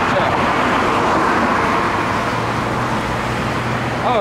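Road traffic going by on the street: a car's tyre and engine noise swelling about a second in, then easing, with a low steady hum joining in the second half.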